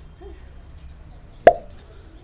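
A single sharp slap about a second and a half in, brief and much louder than the faint background.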